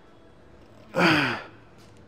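A man's loud, forceful exhale with a voiced groan that falls in pitch, about a second in and lasting about half a second: the exertion breath of a lifter pushing a rep on a chest press machine.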